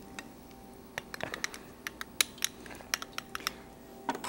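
A utensil clicking against a plastic mixing bowl as batter is stirred: a dozen or so light, irregular clicks starting about a second in, over a faint steady hum.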